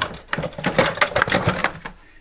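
Dense, rapid rustling and clicking from handling an Eheim canister filter's plastic media tray as a hand presses down the fine filter pad and runs along the tray's plastic handle. It tails off near the end.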